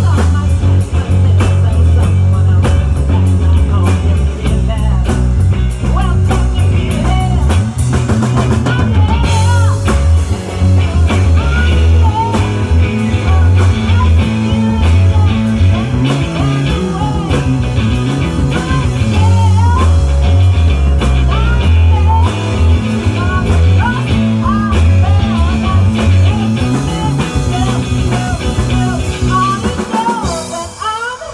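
Rock band playing live: electric bass, electric guitars and drum kit, with a man singing lead through a microphone.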